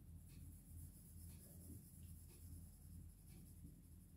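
Faint scratching of a pencil shading on paper, in short strokes about once a second.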